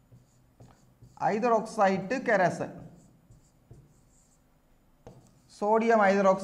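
Faint ticks and scratches of a stylus writing on a tablet screen, with a man's voice speaking a few words about a second in and again near the end.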